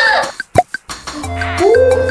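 A single short plop sound effect about half a second in, then bouncy background music with a steady repeating bass line starts about a second in.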